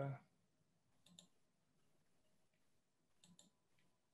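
Near silence, with a few faint clicks about a second in and again after three seconds: a computer mouse being clicked while a screen share is set up.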